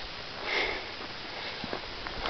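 A person sniffs once, briefly, about half a second in, close to the microphone. Otherwise there is only a faint, even background hiss.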